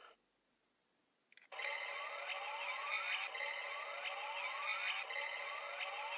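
A click, then a small sound toy's speaker plays an electronic standby loop: a rising siren-like sweep repeats about every three-quarters of a second over a steady electronic tone. This is the Rushing Cheetah SG Progrise Key waiting in its Shotriser mode before the transformation call.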